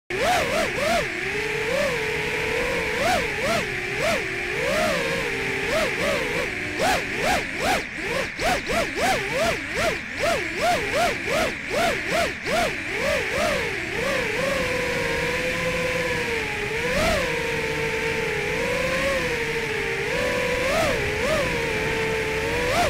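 FPV quadcopter's brushless motors and propellers whining, the pitch jumping up and down with quick throttle punches. There is a run of rapid blips in the middle, then a steadier whine with slow swells.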